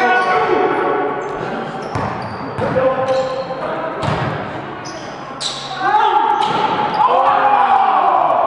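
Pickup basketball in a reverberant gym: a basketball bouncing on the hard court a few times, sneakers squeaking, and players' voices calling out, louder in the last couple of seconds.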